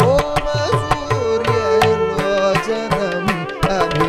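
Carnatic classical music: a male vocalist and a violin carry a bending, ornamented melody over quick drum strokes from a ghatam (clay pot) and a mridangam. Several of the low strokes slide down in pitch.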